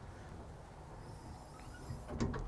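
Faint, steady outdoor background with a low rumble and no distinct event: the quiet gap between sentences.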